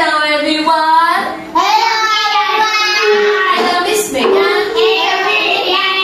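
Young children singing a song together with their teacher as she leads the hand motions; the singing runs on without a break.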